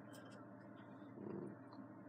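Quiet room tone with a steady low hum, and a brief soft low sound about a second and a quarter in.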